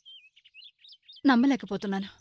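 A small bird chirping in quick, wavering high notes, faint, with a woman's voice cutting in about a second in.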